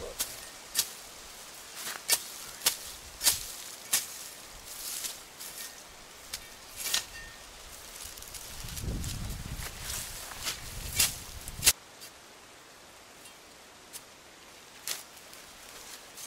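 Digging nampi tubers out of the soil by hand and with a makeshift tool: irregular sharp knocks and scrapes, with rustling of the vine's leaves and stems.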